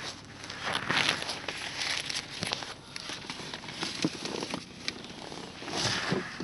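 Air rushing in through an open car window and buffeting the microphone, over the road noise of a moving car, with scattered crackles and clicks of the phone being handled.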